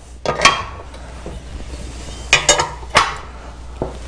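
Metal legs of a clay-target trap frame being dropped into their tube sockets: a few metallic clanks and clinks, about half a second in, around two and a half seconds, and again at three seconds.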